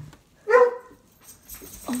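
A dog barks once, a short high bark about half a second in.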